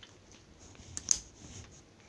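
Faint squishing of a stiff, putty-like pink slime being poked and pressed with the fingers, with two small sticky clicks close together about a second in.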